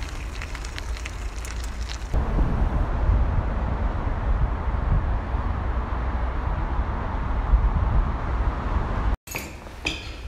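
Wind buffeting a phone's microphone outdoors: a steady low rumble through most of the stretch that cuts off suddenly near the end.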